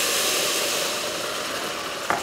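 Boiling water poured into a hot stainless steel pan of fried onions and rice, hissing and sizzling as it flashes to steam, the hiss slowly dying down.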